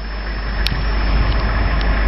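A stopped military convoy truck's engine idling: a steady low rumble that grows slightly louder, with one faint click about two-thirds of a second in.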